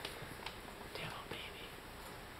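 Quiet room with faint, breathy voice sounds and a few light taps.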